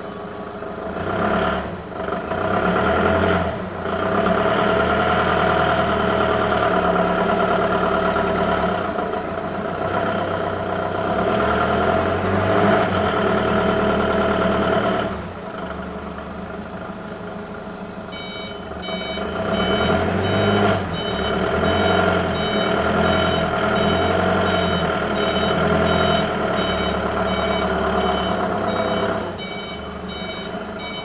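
Octane FD30S diesel forklift engine running and revving up and down in long stretches. From a bit past halfway to the end, its reversing alarm beeps steadily several times a second.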